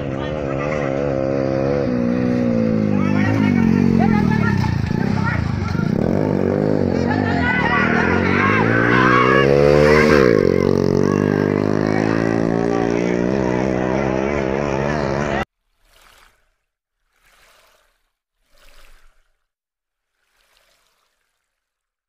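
A motorcycle engine revving up and down as it comes up the road, with people shouting over it. The sound cuts off abruptly about two-thirds of the way through, and four brief, faint electronic bursts follow.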